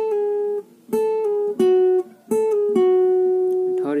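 Cutaway acoustic guitar picking a slow single-note lead line: about four plucked notes, several dropping a step just after the pick as pull-offs from the tenth to the ninth fret on the second string, the last note held and ringing for about a second.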